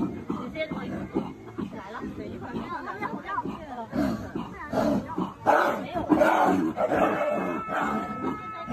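A lion cub and a tiger cub play-fighting, growling and snarling at each other, mixed with people's voices.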